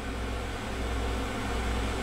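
Steady low hum with a faint hiss, slightly rising in level, with no speech.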